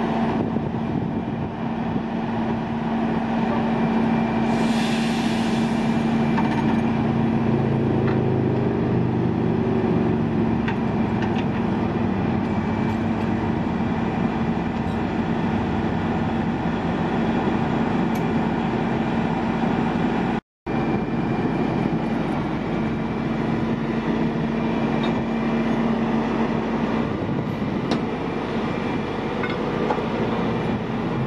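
Heavy rotator wrecker's diesel engine running steadily, powering the boom hydraulics while it lowers a suspended forklift, with a short hiss about five seconds in. The sound cuts out briefly about twenty seconds in.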